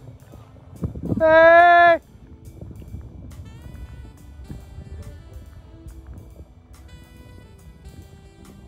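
A single loud, drawn-out call about a second in, lasting under a second at a steady pitch, followed by faint background music.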